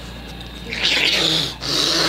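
A man's loud, rasping voice in two bursts, the first about a second in and the second near the end.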